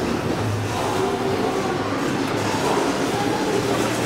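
A KONE MonoSpace machine-room-less traction elevator car in motion: a steady rumble of ride noise inside the car, with a faint low hum.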